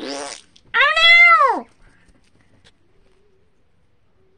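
A short raspy burst, then one loud meow-like call that arches up and falls away, lasting just under a second.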